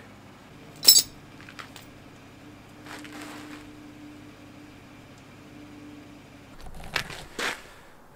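Hand tools clanking against the steel front suspension of a truck: one sharp metallic clank about a second in, then a few lighter clinks near the end, with a faint steady hum in between.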